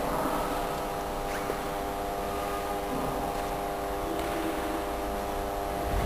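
An organ holding one steady chord of several notes, unchanging throughout, in a reverberant church.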